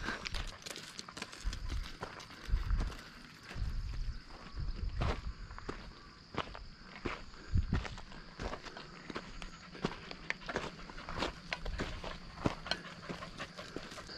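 Footsteps on a loose stone and gravel track, about two steps a second, with a few low thumps. A faint, steady high insect buzz runs behind them.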